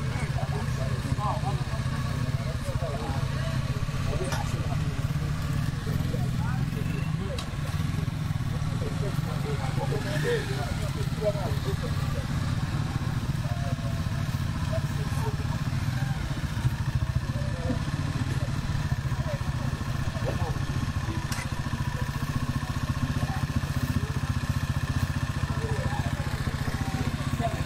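Small motorcycle engines idling steadily, with people talking in the background.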